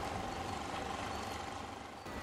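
Steady low engine hum with a constant whine, over an even wash of water noise; the whine stops shortly before the end.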